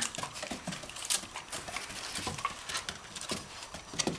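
A puppy's claws clicking and pattering on a wooden plank floor as it moves about, in quick irregular taps.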